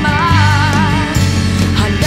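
OPM pop song: a woman sings held, wavering notes with vibrato over a band with steady bass.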